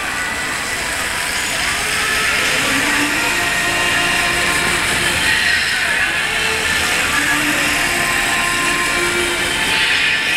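Busy city-crossing street ambience: a steady wash of traffic and many crowd voices, getting a little louder about two seconds in.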